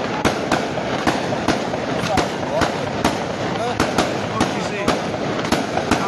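Firecrackers going off in an irregular run of sharp bangs, about two a second, over the murmur of a crowd.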